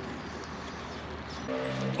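Faint, even outdoor background noise. About one and a half seconds in, a low, steady background-music drone comes in and holds.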